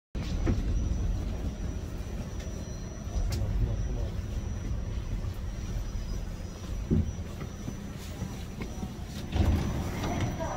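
Subway train running, heard from inside the car: a steady low rumble with a faint high whine and a few short knocks.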